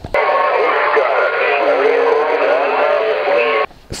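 Single-sideband shortwave voice coming out of a homebrew DDS-controlled phasing direct-conversion receiver. It sounds thin and band-limited, with warbling, gliding voice tones. The sound cuts in suddenly and cuts off suddenly a little before the narration resumes.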